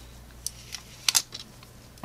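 Protective plastic film being peeled off a watch case: a few short crinkles and clicks, the loudest pair about a second in.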